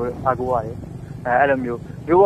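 A person speaking Burmese in short phrases, with a steady low hum underneath.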